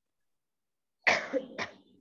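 A woman coughing twice, two sharp coughs about half a second apart after a second of quiet.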